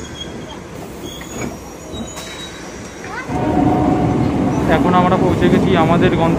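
Electric multiple-unit suburban local train running, heard from inside the coach: a steady low rumble with a few faint, high squealing tones from the wheels. A little over three seconds in the sound turns suddenly louder and busier, with people's voices over it.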